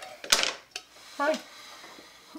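Kitchen knife slicing into a small lime: a sharp knock about a third of a second in, then a lighter tick a moment later.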